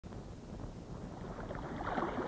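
Faint water splashing and lapping from a swimmer's strokes in a pool, growing slightly louder.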